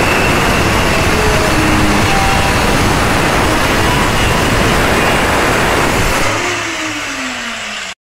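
Corded handheld electric angle grinder running loud against a steel door frame, grinding the metal. About six seconds in it is switched off and the motor winds down, its whine falling in pitch.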